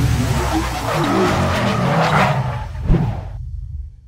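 Intro sound effects of a car with tyre squeal over a low rumble, ending in a sharp hit about three seconds in, after which the sound quickly dies away.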